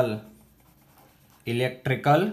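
Faint scratching of a marker pen writing on paper, heard in the pause between bursts of a man's speech at the start and again from about one and a half seconds in.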